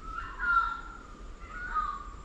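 A bird calling in the rainforest: two drawn-out high notes, one about half a second in and a second near the end.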